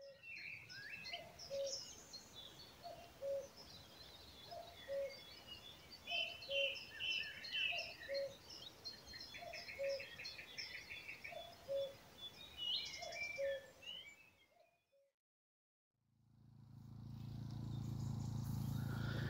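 Woodland birds singing, with many high chirps and trills over a low two-note call repeated about once a second; the birdsong fades out after about fourteen seconds. After a short silence a portable generator's steady low hum fades in near the end.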